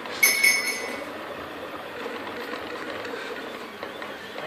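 Picaso 3D Builder FDM 3D printer running steadily mid-print, its stepper motors whirring as the print head moves. A brief, loud, high ringing clink sounds just after the start.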